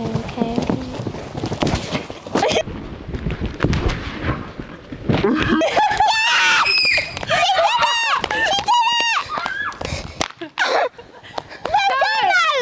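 Wind buffeting the microphone in thumps, then from about halfway a run of loud, high-pitched shrieks and cheers from several girls as the pony clears the jump.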